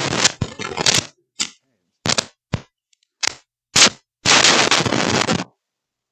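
Scratchy crackling bursts of noise from a cheap lapel microphone as it is handled and rubbed, in a run of short bursts with a longer one near the end: a faulty, scratchy audio feed.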